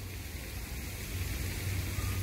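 Steady background noise, an even hiss with a low hum underneath that grows a little louder about halfway through.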